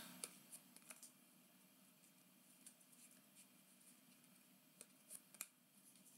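Near silence with faint, short clicks of baseball trading cards being slid off a stack and flipped to the back in the hand: a few soft ticks in the first second and a small cluster of sharper clicks about five seconds in.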